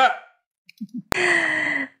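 A sharp click, then a breathy sigh lasting under a second, its pitch falling slightly.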